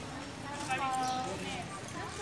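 People's voices talking, with one voice rising and falling clearly about two thirds of a second to a second and a half in.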